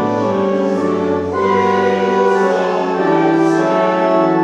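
Church organ playing a hymn in sustained chords, with a congregation singing along; the chords change about every second.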